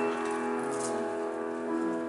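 Grand piano playing a slow passage, held chords ringing out and fading, with new notes struck near the end.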